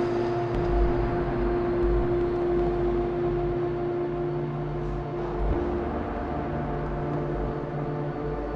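Dark ambient drone soundtrack: a steady low rumble under a held hum-like tone that drops away about five and a half seconds in, as the low layer shifts.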